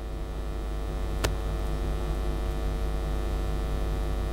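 Steady electrical mains hum through the sound system, with one sharp click a little over a second in.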